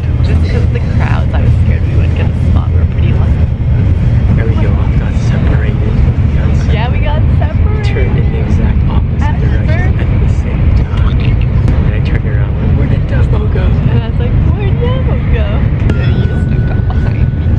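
Steady low rumble of a Shinkansen bullet train running, heard from inside the passenger cabin, with indistinct voices over it.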